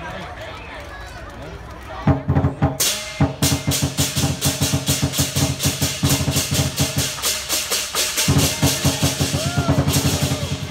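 Lion dance drum breaks into a fast roll about two seconds in, and crashing cymbals join a moment later. The two beat rapidly together, with a brief pause in the drum before it picks up again near the end.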